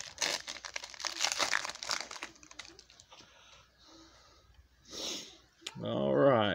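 Foil trading-card pack being torn open and crinkled, loudest in the first two seconds, then fainter handling of the wrapper and cards with a short louder rustle about five seconds in.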